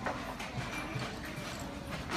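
A person eating a spoonful of miso: a few faint clicks of the spoon and mouth over a low room background.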